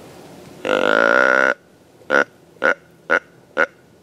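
Deer grunt call blown to call in a whitetail buck: one long grunt of about a second, then four short grunts evenly spaced, about two a second.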